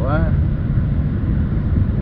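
Steady low rumble of a moving vehicle: road and engine noise with wind, even throughout.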